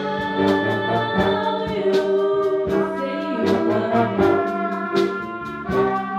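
A school band playing: clarinets, saxophones and brass hold sustained chords over a steady beat.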